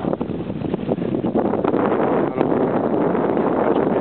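Wind buffeting the camera microphone: a steady rushing noise, with a few brief knocks.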